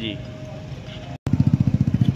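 Faint outdoor background for about a second, then, after an abrupt cut, a motorcycle engine idling loudly with a fast, even putter.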